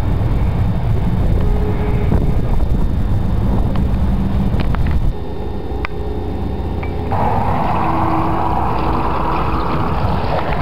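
Road traffic, with trucks driving past and a steady low rumble. It cuts off suddenly about five seconds in to quieter outdoor noise, and there is another abrupt change to a different background about two seconds later.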